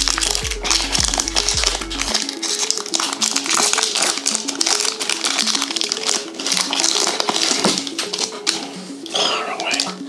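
Foil Pokémon booster pack wrapper crinkling and tearing as it is opened and the cards are pulled out: a dense, rapid crackle. Background music plays under it, its bass dropping out about two seconds in.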